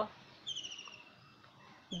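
A bird chirps once, a single falling call about half a second in.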